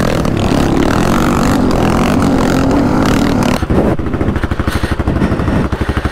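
Honda XR600's single-cylinder four-stroke engine running hard under load, then about three and a half seconds in the revs drop and it chugs at low speed with distinct, separate firing pulses. The rider says the bike is backfiring and suspects dirt in the carburettor or a loose main jet.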